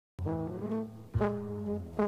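Cartoon score brass music: a held brass chord starts just after the beginning, and a second, louder one comes in about a second later.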